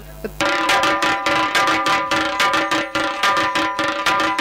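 Dhol, a two-headed barrel drum, beaten in a quick, uneven rhythm, starting about half a second in, over a steady held chord from an accompanying instrument.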